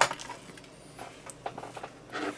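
A sharp click from the spring-loaded captive screw of a laptop's plastic bottom access panel coming free. A couple of faint small clicks follow as the screw and panel are handled.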